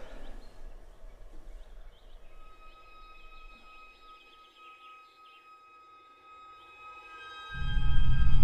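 Birds chirp faintly and fade away as a film-score drone of held high tones comes in. Near the end a loud low rumble swells in sharply.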